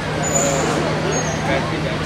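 A crowd of people talking over one another outdoors, with a steady low hum beneath and two short high chirps in the first second or so.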